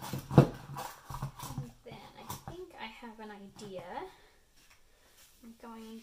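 Several sharp knocks of ceramic tiles and paint cups being set down on a paper-covered table, the loudest about half a second in. A woman then talks in a few short phrases.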